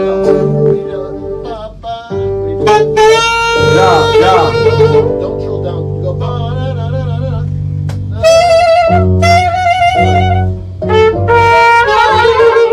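Small band rehearsing in a studio: a saxophone plays melodic lines, some with a wavering vibrato, over keyboard and long sustained bass notes. The playing pauses briefly about two seconds in and again near the end.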